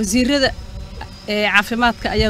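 A woman speaking in Somali into podium microphones, two short phrases with a pause between them, over a faint steady high-pitched whine.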